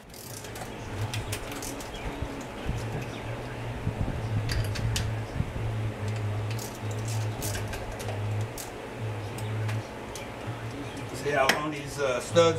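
A socket ratchet on an extension works the carburetor hold-down nuts, giving irregular sharp metallic clicks and taps. A low hum cuts in and out underneath.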